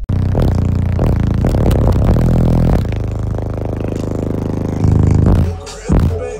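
Bass-heavy music played very loud through a car audio system of six 18-inch subwoofers, heard inside the vehicle, with deep bass dominating; the level drops briefly near the end.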